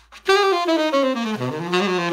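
Tenor saxophone with a Ted Klum Focus Tone mouthpiece playing a short jazz phrase. It starts a moment in, steps down through a run of notes to a low note about halfway through, then winds back up.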